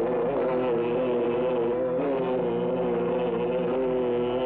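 Horror film background music: a single held note with rich overtones, wavering slightly in pitch and sustained without a break.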